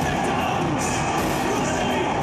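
Live band music playing loudly through a club PA, picked up by a Hi-8 camcorder's microphone, with a cymbal accent about once a second.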